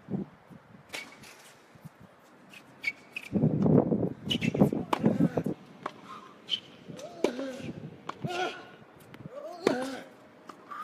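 Tennis balls struck by racquets in a practice rally: a run of sharp, unevenly spaced pops. Nearby voices are heard over it, loudest in a dense stretch through the middle.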